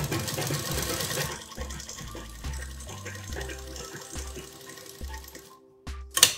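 Domestic sewing machine running, stitching a seam through cotton fabric, loudest in the first second or so and stopping shortly before the end. Background music plays underneath.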